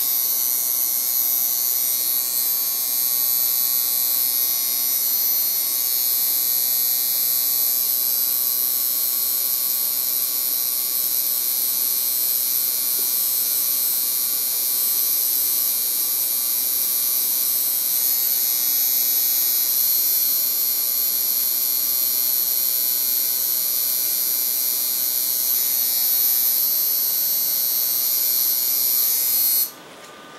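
Tattoo machine buzzing steadily while a line is pulled into the skin, cutting off suddenly near the end.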